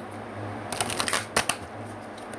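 A tarot deck being shuffled by hand: a quick run of crisp card snaps lasting about a second, in the middle.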